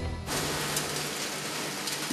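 Electric grinding mill running, a steady, dense rushing noise that comes in suddenly just after the start and holds even.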